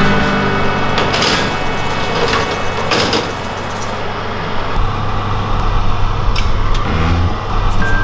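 Metal baking tray being slid onto an oven's wire rack, a rough scraping noise over the first few seconds, followed by a few light clicks.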